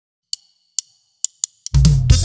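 Drum kit count-in: four sharp ticks with a short metallic ring, about half a second apart and quickening at the end, then about 1.7 s in the full Latin band comes in loud with drums and bass.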